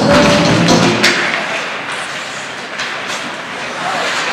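Arena PA music playing during the faceoff, cut off about a second in as play resumes. Then the open sound of the rink: a steady hall hum with a few sharp clicks and scrapes of skates and sticks on the ice.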